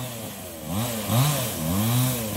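Two-stroke chainsaw engine blipped up and down a few times, its pitch rising and falling with each squeeze of the throttle.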